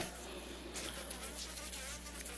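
Faint steady low hum with quiet room noise, no voice.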